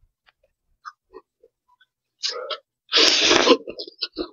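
Thin noodles slurped into the mouth in one loud, airy slurp lasting about half a second, a shorter burst of mouth noise just before it, and a few faint wet mouth clicks earlier.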